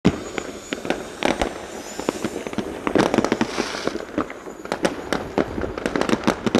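Fireworks and firecrackers going off all around a town: an irregular run of sharp bangs and pops, two or three a second, the loudest right at the start, with a brief hissing patch about halfway through.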